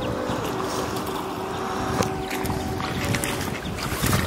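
Steady rush of river water with wind on the microphone, under a few faint held tones.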